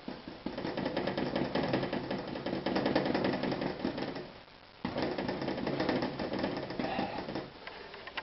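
Paintbrush dabbing rapidly and repeatedly against a canvas, in two runs with a short pause about four and a half seconds in.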